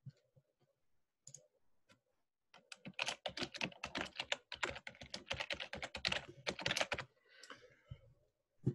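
Typing on a computer keyboard: a few scattered key clicks, then a fast, continuous run of keystrokes lasting about four and a half seconds, stopping about a second before the end.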